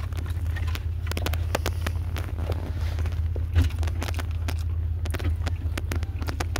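Close-up chewing and biting on a chicken sandwich, a run of short wet clicks and smacks, over the steady low hum of a car's running engine.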